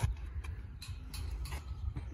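Sneakers stepping and scuffing on a concrete discus circle during a thrower's follow-through: one sharp click at the start, then several fainter ticks, over a low wind rumble on the microphone.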